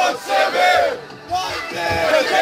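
A group of young men singing and shouting a chant together at full voice inside a bus, celebrating, with a short drop in volume about a second in.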